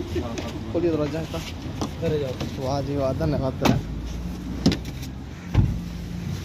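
Car doors being handled as people climb into the back seat: two sharp clicks, then a heavy thud of a door shutting near the end. A car's engine hums steadily underneath, with voices.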